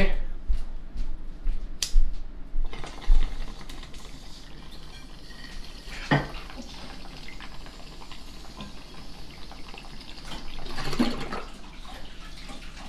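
Glass bong bubbling as a hit is drawn through it: the water gurgles steadily for several seconds and grows louder near the end. A few sharp clicks in the first couple of seconds come from the lighter.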